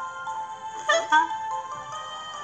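Children's story app background music with steady held tones, and a short cartoon character vocal sound about a second in.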